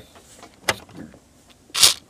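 Lego bricks being handled: a sharp plastic click about a third of the way in and a few faint ticks, then a short rasping scrape as the hand brushes across the bricks near the end.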